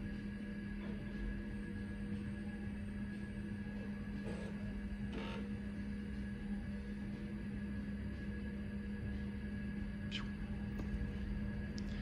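Steady hum of an Apple ProFile 5 MB hard drive still spinning after the Lisa computer beneath it has shut down, with a couple of faint clicks.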